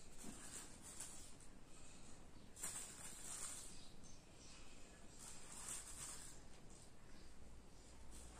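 Faint rustling of a plastic bag as a teaspoon scoops annatto powder out of it, in a few short bursts.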